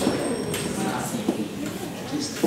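Faint, indistinct speech from an audience member answering off-microphone.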